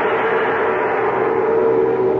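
A gong ringing out after a single strike, its several steady tones slowly fading.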